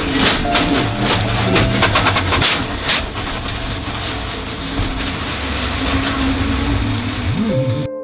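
Onboard sound of a Mercedes-AMG GT3's V8 racing engine running hard, with a quick series of sharp knocks and clatter in the first three seconds. It cuts off abruptly at the very end into soft ambient music.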